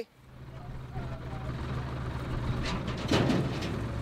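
Steady low engine drone like an idling truck, fading in over the first second, under outdoor background noise with faint distant voices. A short rustling noise comes about three seconds in.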